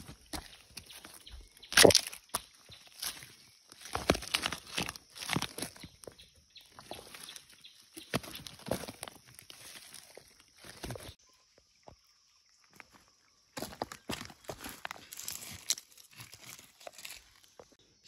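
Loose slate rocks clicking, clacking and scraping as they are lifted and flipped over by hand on stony ground, in irregular knocks with one louder clack about two seconds in. The sound drops out briefly about two-thirds of the way through.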